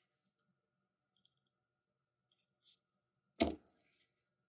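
A dollop of soft cheese dropped from a wooden spoon into a plastic cup, landing with one short thud about three and a half seconds in, after a couple of faint clicks.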